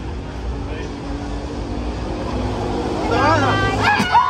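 Low steady rumble of a passing vehicle, then near the end a woman's startled cry breaking into laughter as the hidden bushman jumps out at her.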